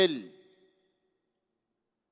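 The last word of a man's lecture speech, falling in pitch and fading out within the first half-second, then silence.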